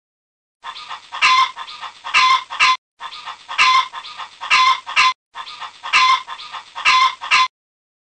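Domestic hens clucking: a run of short sharp clucks, repeated three times with brief gaps between.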